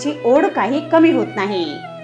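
A voice speaking over background music with a steady low drone, which shifts to a higher note about a second and a half in.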